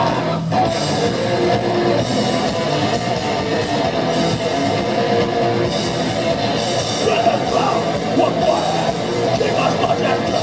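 A rock band playing loud live: electric guitar, a drum kit with repeated cymbal hits, and a singer's vocals.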